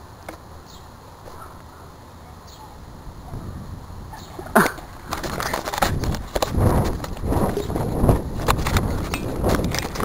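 Faint outdoor background, then about halfway a sudden sharp sound. From there to the end, loud irregular knocking, rustling and rumble of the camera being jostled as it is moved quickly across the grass.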